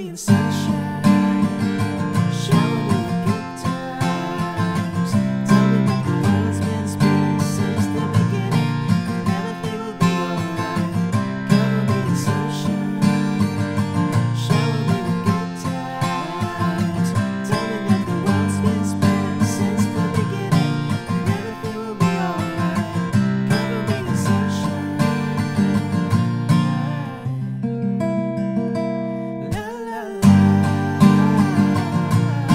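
Cole Clark acoustic guitar, capoed at the third fret, playing a picked chord pattern that moves into strummed chords (Em, G, D, A) in a steady down-up strumming rhythm.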